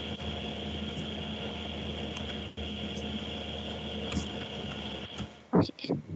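Steady low electrical hum and hiss with a faint high-pitched whine, broken by a few faint clicks. The hum cuts off shortly before the end.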